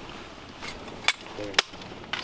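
Two sharp metallic clicks about half a second apart as the parts of a rifle are handled during assembly, with a brief voice sound between them.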